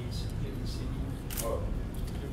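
A few sharp camera shutter clicks, the loudest about one and a half seconds in, over a steady low room hum.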